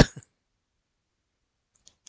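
The end of a brief laugh, cut off within a quarter second, followed by dead silence from an edit gap, with a faint click near the end.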